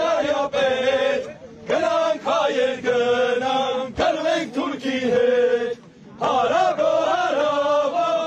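Men's voices chanting a traditional Armenian dance song in unison, in phrases of a few seconds with short breaks between them. A single sharp click sounds about halfway through.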